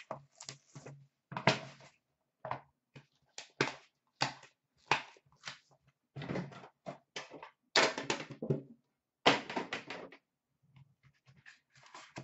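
Handling noises of metal trading-card tins being taken from a plastic bin and opened: an irregular run of short rustles, scrapes and light knocks, a few each second.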